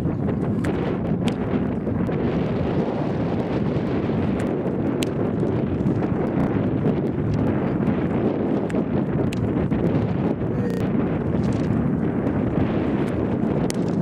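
Wind buffeting the camera microphone: a loud, low, gusting rumble, with a few faint sharp ticks in it.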